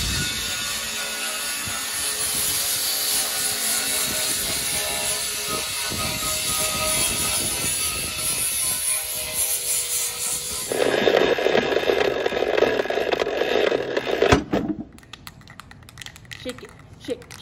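DeWalt angle grinder grinding on the battlebot's metal chassis frame, a steady high grinding with a whine running through it. About eleven seconds in it shifts to a louder, lower grinding tone, then cuts off about a second and a half before the end.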